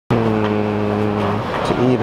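A man's voice holding one long, steady low note for over a second, then a short rising syllable near the end, the drawn-out opening words of a dramatic spoken line.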